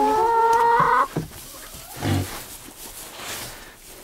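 Pig at its pen board giving one long, rising whine that breaks off about a second in, followed by a single low grunt.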